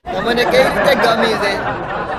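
Chatter of many voices talking over one another, starting suddenly and staying loud.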